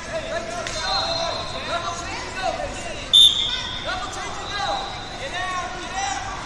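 A referee's whistle blows sharply about three seconds in, the loudest sound here, over a run of short rubber-soled shoe squeaks on the wrestling mats and shouting across a large gym.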